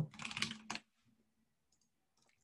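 Faint computer keyboard typing with a few clicks, which cuts off abruptly to silence just under a second in.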